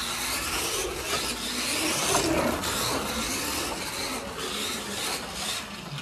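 A 1/24 scale slot car, a Red Bull F1 model converted from a Maisto radio-control car, running on a plastic Carrera track: a steady whir of its small electric motor with the rasp of the guide and braids in the slot.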